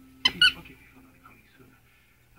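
Two short, high squeaks in quick succession, about a quarter second in.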